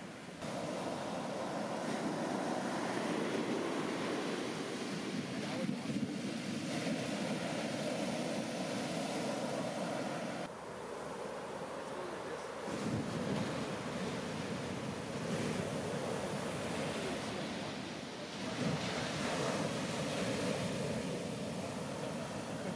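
Heavy shore-break waves crashing and whitewater rushing up the sand, a continuous surf wash that dips in level about halfway through and swells again twice.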